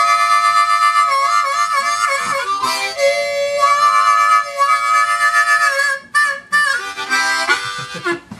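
C diatonic blues harmonica playing a bent draw note made deliberately gritty, with the neighbouring hole leaking in for a dirty, slightly chordal tone and with vibrato. The long held notes break briefly about two and a half seconds in and turn into shorter, choppier phrases near the end.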